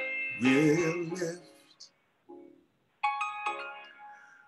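A man singing solo, a slow sung phrase with a wide vibrato, broken by a short pause about halfway through before held notes start again.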